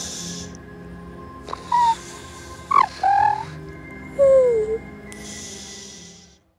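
Dark forest ambience over a low, steady music drone, with three short gliding animal calls and a few soft breathy hisses.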